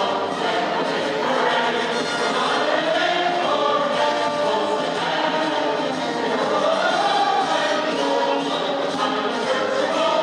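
Music with a group of voices singing together, the melody moving up and down without a break.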